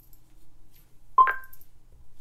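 Google Home smart speaker playing a short two-note electronic chime about a second in, a lower tone followed at once by a higher one, each ringing out briefly.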